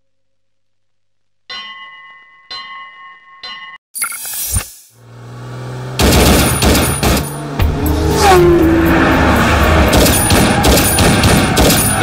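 Three bell-like ringing strikes about a second apart, a whoosh, then from about six seconds in a loud, dense promo soundtrack of rapid gunfire-like bangs with rising and falling engine-like whines.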